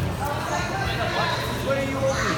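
Indistinct overlapping voices of several people talking at once, over the general shuffling noise of wrestlers drilling on mats.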